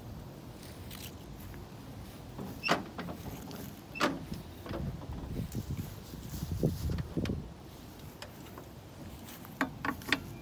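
Footsteps and handheld camera handling noise: a few sharp clicks, about a second and a half apart, then irregular low thumps, and more clicks near the end.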